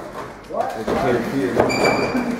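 A wrestler's kick landing and his opponent dropping onto the ring mat, under a man's wordless voice. A short high-pitched squeak comes near the end.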